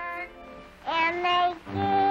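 A young girl singing sustained notes with musical accompaniment, coming in about a second in after a brief lull, with the thin sound of an early sound-film track.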